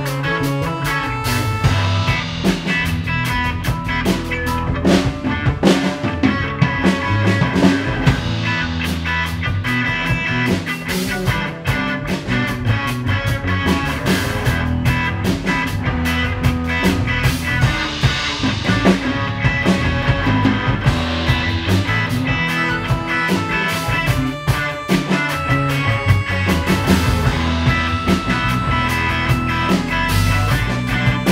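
Instrumental rock jam: a drum kit keeping a steady beat under a prominent bass line and a guitar, playing continuously.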